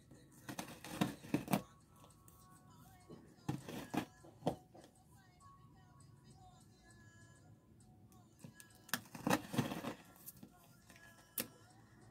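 Scissors snipping and tearing through the tape and cardboard of a shipping box in short bursts: about a second in, around four seconds, and again between nine and ten seconds. Faint music plays in the background.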